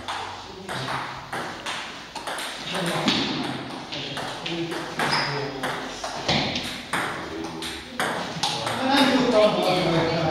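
Table tennis balls clicking off rubber bats and the tabletop in a doubles rally, a quick irregular run of sharp ticks.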